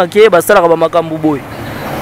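A man speaking for about the first second and a half, then a rising rush of noise near the end.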